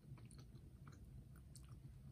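Near silence with faint, soft clicks of quiet chewing on a bite of cheese.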